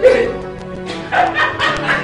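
Background music with a dog barking over it: one loud bark at the start, then a quick run of four or five barks in the second half.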